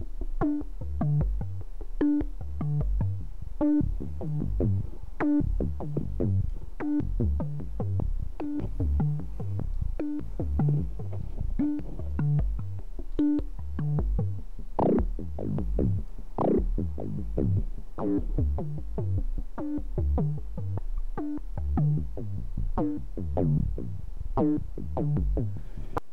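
Buchla 200e modular synthesizer playing an FM patch from a pair of sine oscillators: a quick repeating sequence of short, fast-decaying notes shaped by the FM articulation. About halfway through, some notes turn brighter with falling sweeps in pitch as the patch's knobs are turned.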